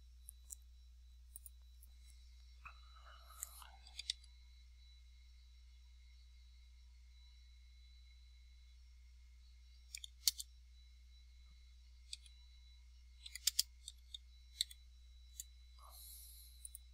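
Faint, scattered clicks of computer keys as a six-digit PIN is entered, coming singly and in small clusters with long quiet gaps between them, over a steady low hum.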